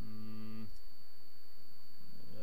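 A man's drawn-out hesitation hum at one steady pitch for under a second, then a pause filled with recording hiss and a steady high electrical whine, with one faint click shortly after the hum stops.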